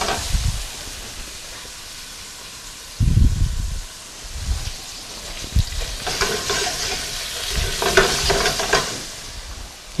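Sliced tomatoes sizzling in hot olive oil and garlic in a stainless steel sauté pan. The pan is shaken and shifted on the gas range's grate, giving low knocks about three seconds in and again near the end, with the sizzle swelling as the pan moves.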